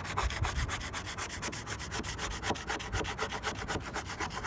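Plastic scraper scraping clearcoat, softened by aircraft remover, off an Airstream's polished aluminium skin in rapid short strokes, several a second.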